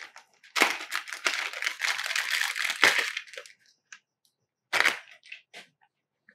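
Plastic packaging crinkling and rustling as it is handled, for about three seconds, followed by a short clatter about five seconds in.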